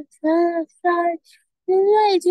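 A child singing a few short held notes unaccompanied, with a brief pause after the third note before singing resumes near the end.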